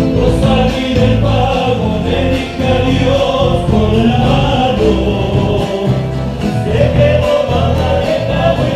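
A live folk band playing: several male voices singing together over strummed acoustic guitars and a steady bass rhythm.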